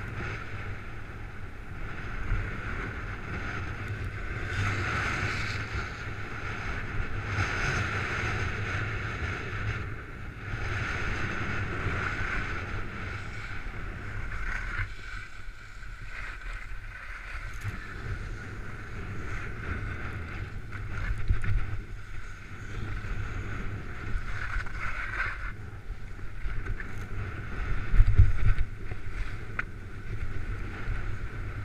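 Wind rumbling on a head-mounted camera's microphone and skis scraping over packed, rutted snow on a downhill run, the scraping hiss rising and falling over and over.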